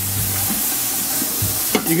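White wine poured into a hot stockpot of bacon fat, vegetables and blond roux, sizzling with a steady hiss as it deglazes the pan.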